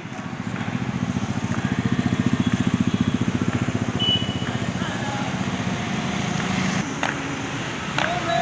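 A motorcycle engine puttering past at low speed. Its rapid, even firing beat grows louder to a peak two to three seconds in, then fades away.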